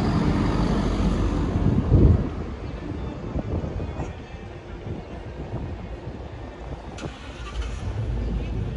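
City street traffic: a motor vehicle passes close by, loudest about two seconds in, then the noise settles to a lower, steady traffic hum. A single sharp click comes near the end.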